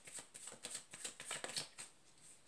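A deck of tarot cards being shuffled by hand: a faint, quick run of soft card flicks that stops shortly before the end.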